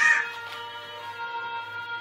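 A child's high, rising wail breaks off just after the start, then electronic baby-toy music holds a steady chord of tones.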